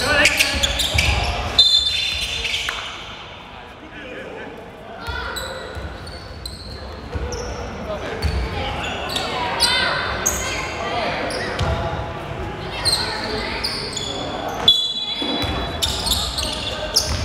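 Basketball bouncing on a hardwood gym floor during a game, with players' voices, echoing in a large indoor hall.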